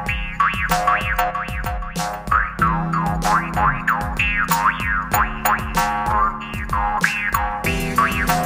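Iron jaw harp (demir kopuz) twanging, its sound sweeping up and down over a held drone, played over a backing beat with sharp percussive clicks. The drone note shifts about a third of the way in, again past halfway, and near the end.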